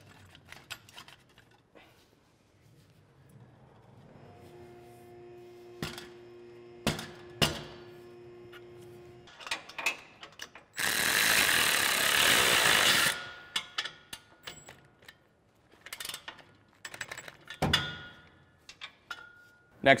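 Metal clinks and knocks of a steel exhaust tip and pipe being slid on and aligned by hand. A steady low hum runs for a few seconds in the first half. A little past the middle comes a loud burst of noise of about two seconds that starts and stops sharply.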